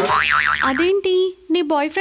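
A cartoon-style comic sound effect, a tone whose pitch wobbles rapidly up and down for about the first second, laid over a background song, followed by a long held sung note.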